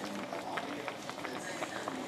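Rabbit stew broth simmering in a cast iron skillet: a steady bubbling with a run of small, irregular pops and crackles.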